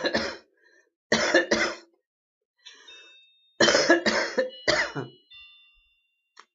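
A woman coughing in short harsh fits: one cough at the start, two close together about a second in, then three in quick succession around four seconds in. The coughing is set off by the vapour from a sub-ohm vape tank run at half an ohm and about 20 watts, which she says makes her cough every time.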